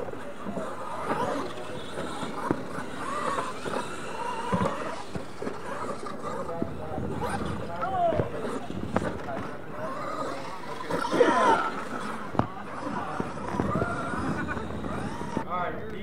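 Radio-controlled monster trucks running on a dirt track, mixed with people's voices.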